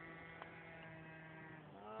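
Faint, steady buzz of an electric RC model airplane, a T-28 Trojan, flying overhead, its motor and propeller holding an even pitch.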